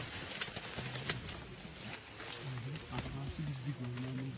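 Short, low vocal murmurs or grunts, with a run of sharp crackles in the first second or so.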